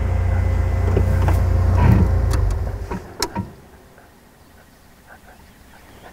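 Open safari vehicle's engine running as it drives, a low rumble that fades away about halfway through. A couple of sharp clicks follow, then quiet outdoor ambience.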